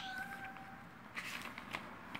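Paper book pages rustling and clicking as they are handled and turned, with a short steady high-pitched tone in the first second.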